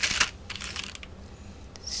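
Small clicks and light clatter from a plastic ink pad and rubber bands being handled on a table: a quick cluster of clicks at the start, then softer tapping and rustling that fades within about a second.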